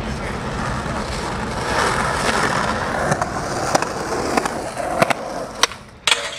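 Skateboard wheels rolling on concrete with a steady rumble, and several sharp clacks in the second half.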